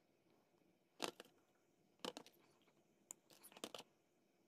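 Faint handling of copper wire with small pliers: short, sharp metal clicks and scrapes come in three brief clusters, about a second in, about two seconds in and near the end.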